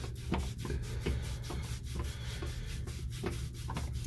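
A wet cloth towel scrubbed briskly back and forth over a soaped, wet forearm, in quick repeated rubbing strokes.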